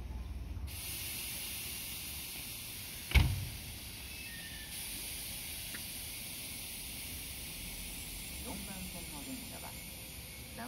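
Station platform sound beside a standing Nagoya subway 3050-series train: a steady hiss begins shortly after the start, with a single loud knock about three seconds in. A platform public-address announcement begins faintly near the end.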